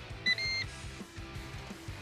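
Background music, with a two-part electronic beep about a quarter second in: a short tone, then a longer one. The beep is the Ninja Woodfire Grill's control-panel alert that it has preheated and food can go on.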